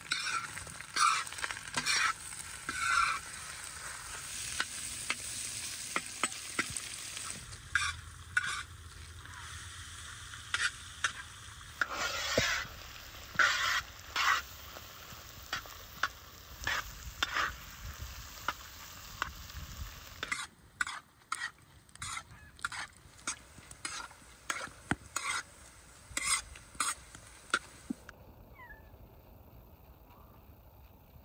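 Diced fat sizzling in a large wide steel pan, with a metal spoon scraping and stirring against the pan in repeated strokes. The sizzle drops away shortly before the end.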